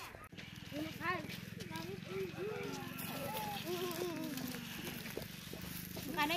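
People talking in high voices, with a steady low hum underneath.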